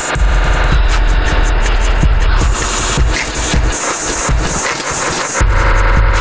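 Harsh, dense electronic noise music built from processed porn-film audio and Reason software loops: a heavy low drone under layers of static-like noise, with the highs stuttering in quick regular pulses, about five a second. The deep bass drops out for a second and a half past the middle, then comes back.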